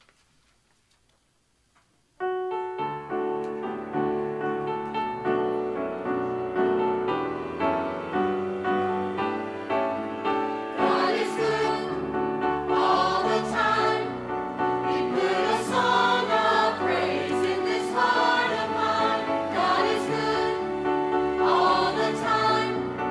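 Church choir anthem: after a couple of seconds of near silence an instrumental accompaniment starts, and the mixed choir comes in singing about halfway through.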